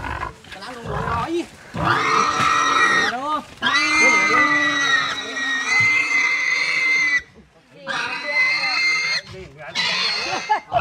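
A large domestic pig of over 80 kg squealing as several men hold it down: four long, high-pitched screams, the longest lasting about three seconds. These are a restrained pig's distress squeals.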